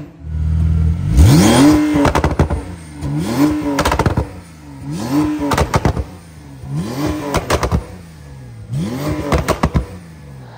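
Porsche 992 Turbo S's twin-turbo 3.8-litre flat-six, on an ES700 tune with an aftermarket exhaust, revved in a string of about six blips roughly every second and a half. Each blip is followed by a burst of exhaust crackles and pops as the revs fall.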